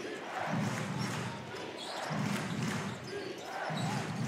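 Basketball arena during live play: a crowd's voices swelling and falling about every second and a half, with a basketball being dribbled on the hardwood court.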